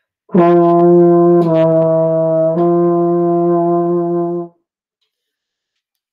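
Baritone horn playing three held notes in a row, the middle one a little lower, for about four seconds before stopping.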